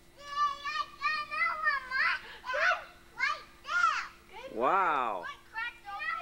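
Young children's high-pitched voices calling out and chattering excitedly, with one longer call that rises and falls in pitch about four and a half seconds in. A faint steady hum runs underneath.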